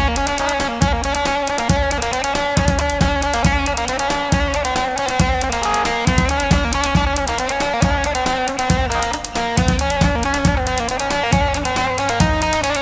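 Live band dance music for a halay: an amplified plucked-string melody over a steady thumping drum beat.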